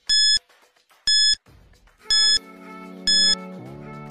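Countdown-timer beeps: four short, identical electronic beeps about a second apart, ticking off the seconds of a quiz timer. A quieter low held tone comes in about halfway and shifts pitch slightly near the end.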